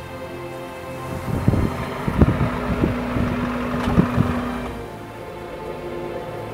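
Background music over a Toyota Camry sedan pulling up and stopping. The car sound swells for a few seconds in the middle, with several low thumps.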